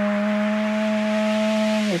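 A man's voice holds one steady note for about two seconds, matching the dominant pitch heard in a white-noise sample, a pitch said to be in tune with the song's chords. Under it the white-noise sample plays back as an even hiss.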